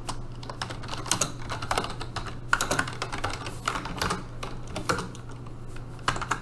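Typing on a computer keyboard: quick, irregular keystrokes over a steady low hum.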